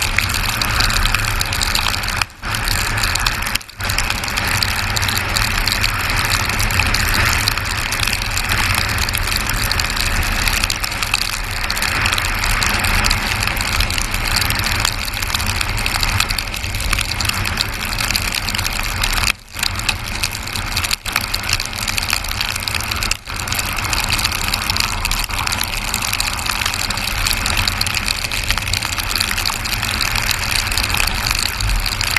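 Steady wind rush and tyre noise from a motorcycle travelling at speed on a wet road, with the motorcycle's engine running beneath, heard on the rider's camera microphone. The sound cuts out for an instant about five times.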